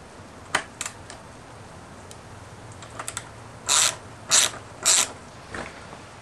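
Hand ratchet driver clicking as it turns heavy-duty screws into a steel leg bracket: a few single clicks, then three short ratcheting bursts about half a second apart.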